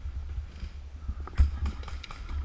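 Scattered sharp pops and knocks of paintball markers firing and paintballs striking, the loudest about 1.4 s in, over a low rumble.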